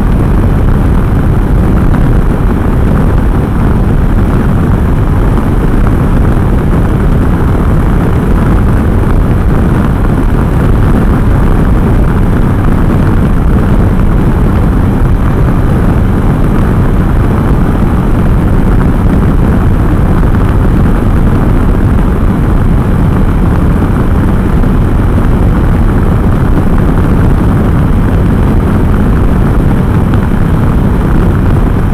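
Steady, loud wind rush on a helmet-mounted microphone while riding a Can-Am Spyder F3 three-wheeled motorcycle at road speed, with the engine running underneath.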